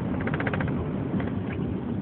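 Steady road and engine noise inside a moving car's cabin. Shortly after the start there is a brief burst of rapid ticking.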